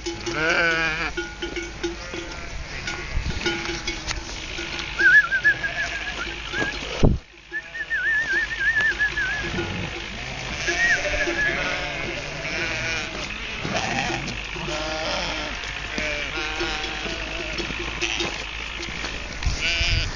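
A large flock of sheep bleating, many quavering calls overlapping one another, with a brief dropout in the sound about seven seconds in.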